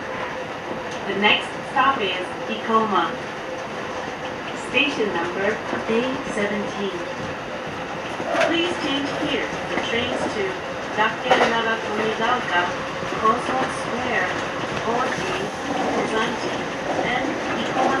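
Kintetsu electric commuter train running along the track, heard from inside the leading car, with steady running noise and wheel-on-rail clatter; voices come and go over it.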